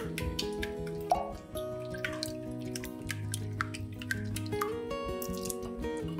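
Silicone whisk beating eggs and milk in a glass bowl: quick wet splashing strokes, with one louder stroke about a second in, over background music.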